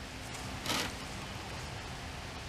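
Squeeze bottle of barbecue sauce sputtering once, a short soft hiss a little under a second in, over a faint steady background hiss.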